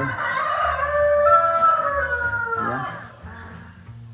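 A rooster crowing once: one long call of about three seconds that ends in a falling note.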